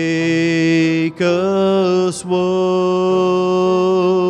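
A man singing a slow worship song into a microphone, holding long, steady notes with short breaks about a second in and just after two seconds, over an acoustic guitar.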